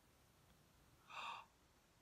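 A woman's short, breathy gasp of delight about a second in, with near silence around it.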